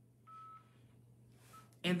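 Two faint electronic beeps at one pitch from a mobile phone: a longer one a quarter second in and a brief one about a second and a half in.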